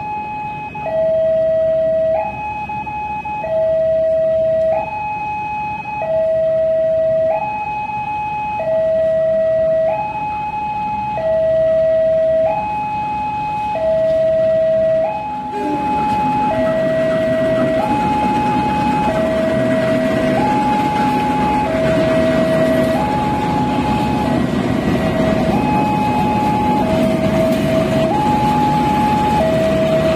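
A two-tone electronic warning alarm alternating between a high and a low pitch, each held about a second, the kind sounded at a railway level crossing. About halfway through, the heavy rumble of a diesel-electric locomotive's engine comes in loudly under it as the locomotive shunts a rake of coaches past.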